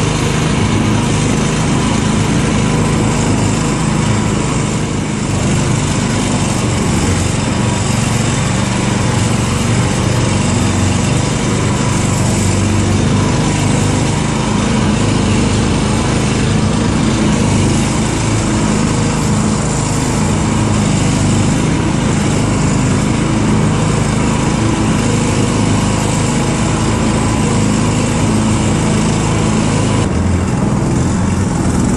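Small engine of a karakat, a homemade off-road vehicle on huge low-pressure tyres, running steadily while it drives, heard close up from on board.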